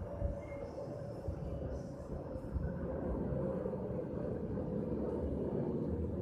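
A low, steady background rumble that grows a little louder about halfway through.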